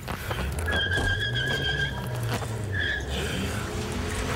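A Scion xB driving off, its engine rumbling low and swelling as it pulls away. A high, steady squeal is heard over it for more than a second, then a second short one.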